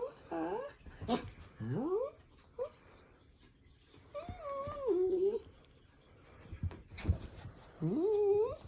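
Small dog whining and grumbling in a run of pitched calls that swoop up and down, with one longer call about halfway through: a dog warning another off its food. A couple of short sharp knocks come about a second in and near the end.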